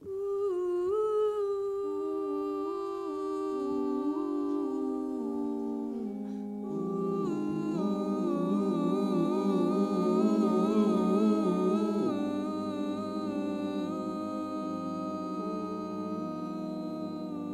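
A small vocal group humming a cappella in harmony. A single voice starts alone, further voices join over the next few seconds, and a low bass voice enters about twelve seconds in.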